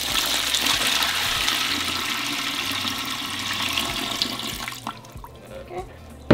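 Water poured from a plastic pitcher into a tall aluminum steamer pot, splashing onto rice and garbanzo beans at the bottom. The pouring stops about five seconds in, followed by a couple of faint knocks.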